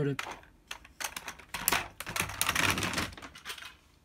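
Gamera friction toy rolling across a tabletop, its friction motor's gears clicking and rattling rapidly for about three seconds before dying away. The owner suspects something has gone wrong mechanically inside it.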